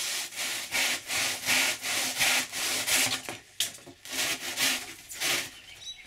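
Handsaw cutting through a foam block, back-and-forth strokes at about two to three a second. After about three seconds the strokes grow weaker and sparser, and they stop shortly before the end.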